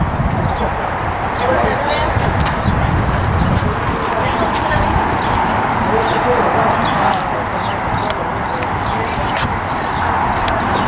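Hoofbeats of a Friesian horse loping on arena dirt, over a steady background of indistinct voices.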